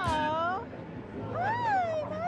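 Dog whining twice in high, gliding cries: a short dipping whine at the start and a longer rising-then-falling whine in the second half.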